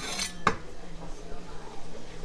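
A ladle clinking against the pot and funnel while hot tomato juice is ladled into a canning jar: a short rattle, then a sharp clink about half a second in. A kitchen fan hums steadily underneath.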